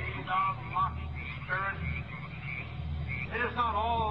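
A distant man's voice slowly declaiming ceremonial lines, muffled and indistinct, in drawn-out phrases over a steady low hum.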